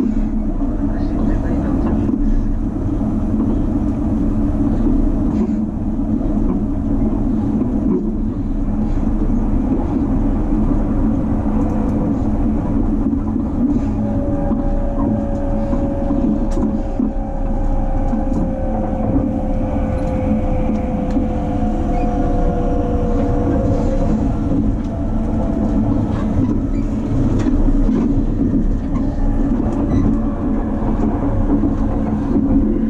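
Running noise of an E257 series electric train heard from inside the car: a steady rumble of wheels on rail with a low hum. Midway a whine slowly falls in pitch over about ten seconds.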